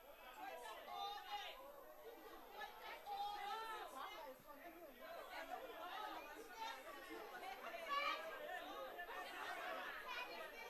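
Indistinct chatter of many people talking at once, overlapping voices with no single speaker standing out, carrying in a large debating chamber.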